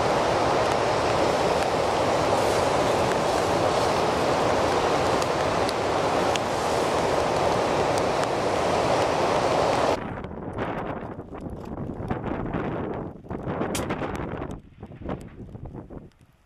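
A steady, even rushing noise for about ten seconds, then an abrupt cut to duller, uneven gusts of wind buffeting the microphone.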